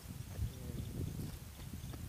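Soft, irregular low thumps and rumble from a handheld phone being carried and swung about, its microphone picking up handling and movement noise.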